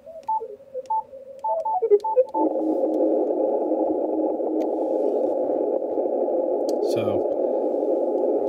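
Yaesu FTdx5000 transceiver's receive audio on CW. A few short beeps sound as its noise reduction and filters are switched off, then a steady, loud rush of band noise fills the audio, with the extremely weak CW station lost in it.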